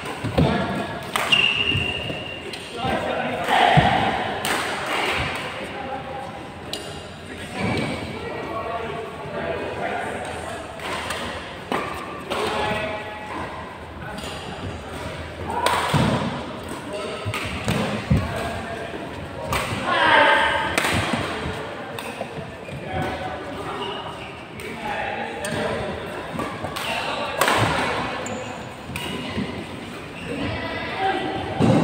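Badminton rackets striking shuttlecocks in doubles rallies, sharp hits scattered irregularly with thuds of players' footsteps, under the chatter of players' voices in a reverberant indoor hall.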